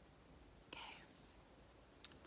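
Near silence with room tone, broken by one short whisper about three-quarters of a second in.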